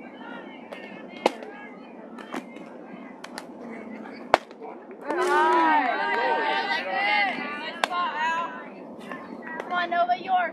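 A single sharp crack of a softball bat striking the ball about four seconds in, then several voices shouting and cheering together for about four seconds. Before the crack there is a murmur of voices with a few fainter claps or clicks.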